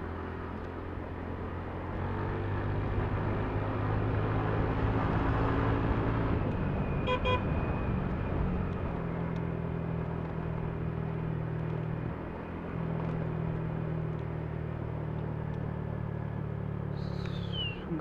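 Motor scooter engine running at riding speed with road and wind noise, a little louder for a few seconds before settling steady. A short horn beep sounds about seven seconds in.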